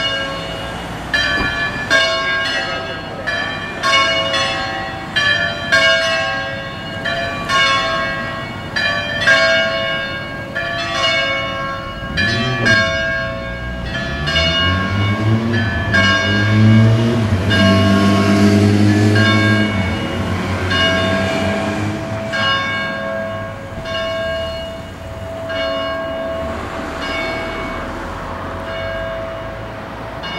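Three church bells, tuned in C-sharp to a Phrygian scale and swung in the Ambrosian style, ring a solemn peal at about two strikes a second, with fewer strikes near the end. In the middle a passing motor vehicle is heard, its engine note rising, loudest for a few seconds.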